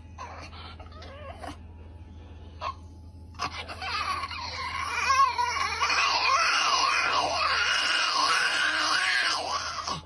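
Small dog vocalizing: a few faint short whimpers in the first seconds, then from about three and a half seconds in a long, loud, wavering howl whose pitch rises and falls again and again.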